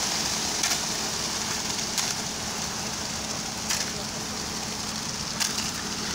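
Wet concrete pouring down a transit mixer truck's steel chute with a steady gritty hiss, over a low steady hum from the truck. A few short sharp clicks break through, about four in all.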